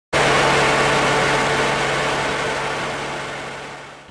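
An engine running steadily, a low hum under a noisy wash, fading out gradually.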